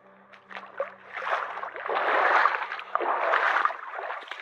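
Feet wading into a shallow, rocky creek, the water sloshing and splashing with each step, with louder surges about two seconds and three and a half seconds in.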